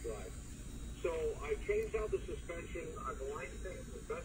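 Speech only: a voice talking, with a short pause near the start.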